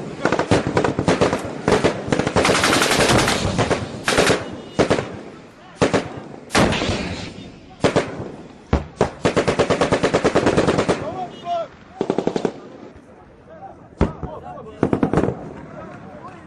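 Bursts of automatic-weapons gunfire, some long and rapid, others short, mixed with single shots. The firing thins out after about eleven seconds to a few scattered shots and a short burst near the end.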